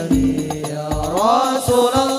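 Banjari-style hadroh sholawat: a sung vocal line holds a note, then glides up into a new held note over about the second half, above regular low frame-drum beats.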